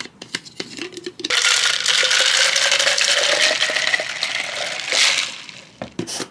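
Iced americano with its ice poured from a plastic cup into a plastic shaker bottle: a loud rush of liquid for about four seconds, its pitch slowly rising as the bottle fills. Before the pour come a few clicks and rattles of ice and plastic.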